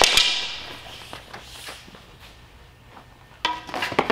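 Toothpick bo staff knocking. The ringing of a strike dies away over the first second, a few light taps follow, and a louder clatter comes near the end.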